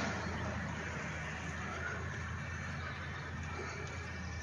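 Quiet, steady outdoor ambience: a low rumble and soft hiss with no distinct events.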